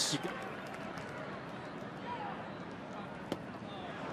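Ballpark crowd murmur as a steady, fairly quiet background, with one sharp click about three seconds in.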